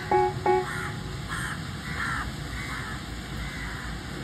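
A bird cawing, one short harsh call roughly every half second, over a steady low background rumble; the last few plucked guitar notes of the music end about half a second in.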